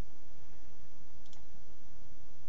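A single computer mouse click, a quick double tick about a second in, over a steady background hiss and low hum.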